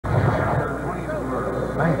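Television commentary: talk throughout over a steady low hum, with a man saying "Nice" near the end.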